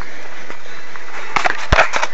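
Steady background hiss with a few clicks and knocks, and one low thump near the end, as a handheld camera is moved about.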